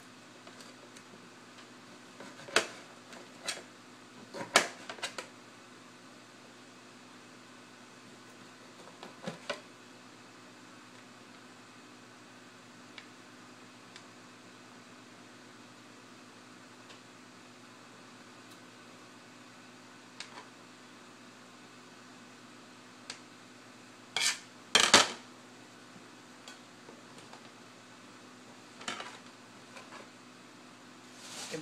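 Scattered knocks and clinks of a knife, cutting board and dishes on a kitchen countertop as lemons are cut and peeled, loudest in a quick cluster about three-quarters of the way through, over a steady low hum.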